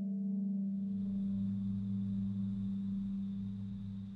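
Electro-acoustic ambient music: a sustained low drone, with a faint high steady tone above it. A few higher tones fade out within the first second.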